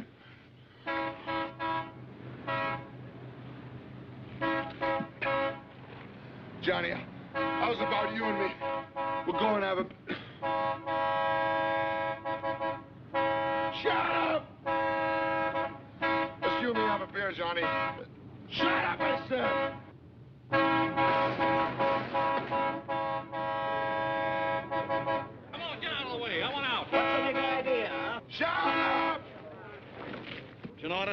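Car horn honking: a few short toots, then long, drawn-out blasts repeated again and again, with a crowd's voices shouting in between.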